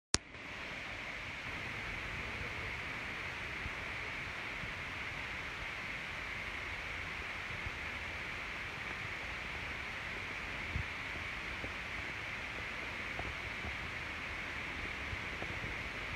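Steady hiss of background noise, with a sharp click at the very start and two faint knocks later on.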